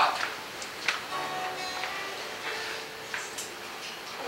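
Acoustic guitar played softly, a few notes ringing between talk, with a couple of sharp clicks.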